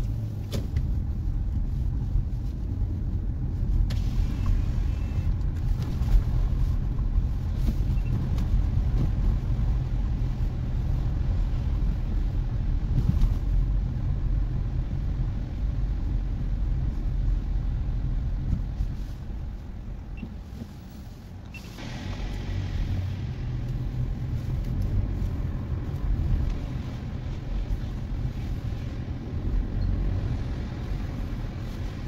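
Car cabin road noise while driving: a steady low rumble of engine and tyres, dipping briefly about two-thirds of the way in, then returning with more tyre hiss.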